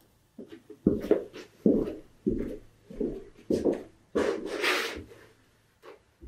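A run of dull knocks, about one every two-thirds of a second, with a longer scraping or rubbing noise about four seconds in.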